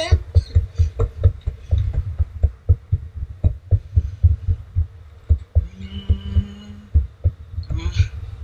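Skateboard rolling on a concrete sidewalk, its wheels and deck giving a rapid, uneven run of low knocks, several a second, over the rough surface and slab joints. About six seconds in, a steady held tone sounds for just over a second.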